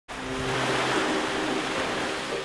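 Ocean surf: a wash of breaking waves that swells over the first second and slowly eases, with soft held music notes underneath.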